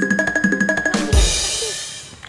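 Drum-roll sound effect over a steady high tone, ending about a second in on a bass drum hit with a crash cymbal that fades away.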